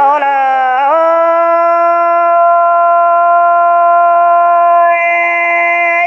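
A singer's voice holding one long note in a Mien song, rising slightly about a second in and then sustained at a steady pitch for about five seconds.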